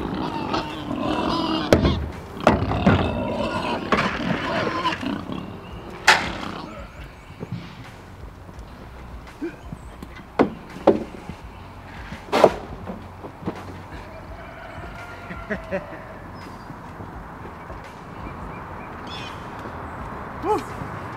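Livestock calling, loud pitched cries for roughly the first six seconds, then several sharp knocks over a quieter background.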